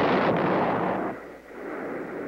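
Bomb explosions: a dense, rumbling blast that fades out a little over a second in, leaving a fainter rumble.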